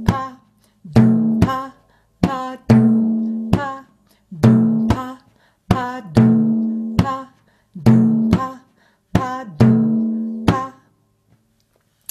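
Frame drum played slowly in the maqsum rhythm. Deep dum strokes, struck with the side of the thumb near the rim, ring on after each hit, and they alternate with short, dry, higher pa pops from the finger pads toward the middle of the head. The pattern stops shortly before the end.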